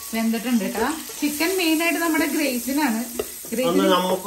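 Masala chicken pieces sizzling as they fry in oil in a nonstick pan, turned with a wooden spatula, with a voice going on over the frying.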